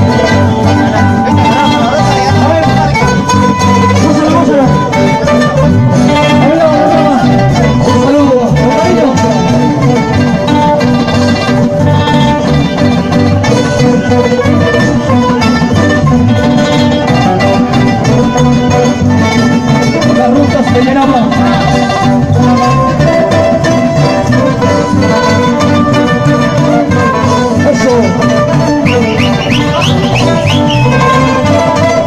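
Live band of several acoustic guitars playing Andean music, loud and continuous through the whole stretch.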